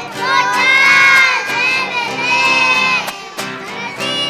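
A choir of preschool children singing a Christmas carol loudly together, in sustained sung phrases, with acoustic guitar accompaniment.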